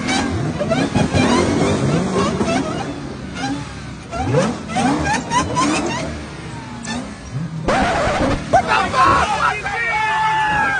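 A Dodge muscle car's V8 engine revved in short rising blips, with voices around it. From about eight seconds in, a group of people shouting and yelling excitedly.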